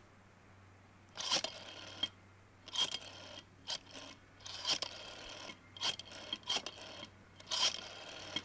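Desk telephone being dialed: a string of short clicks and scrapes from the dial, roughly one or two a second, with brief pauses between.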